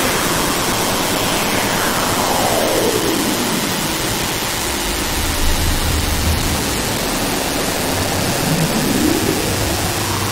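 Producer transition sound effects built from filtered white noise: a noise sweep falling in pitch over about three seconds, a low rumble in the middle, then a noise riser beginning to climb near the end.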